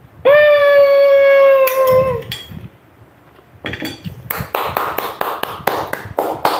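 A woman's long held vocal note of delight, steady in pitch and falling off at the end, lasting about two seconds. After a short pause, rapid hand clapping follows at about five claps a second.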